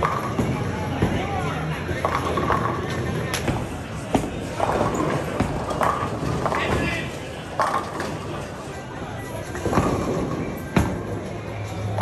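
Bowling alley din: a bowling ball rolling down a wooden lane and several sharp clatters of impacts, over background chatter and music.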